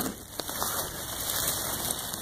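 Dry leaf litter and undergrowth rustling and crackling close to the microphone, with a couple of small clicks.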